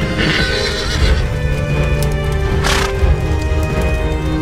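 A horse whinnying in the first second, over background music of sustained tones, with hoofbeats; a short burst of noise comes about two-thirds of the way through.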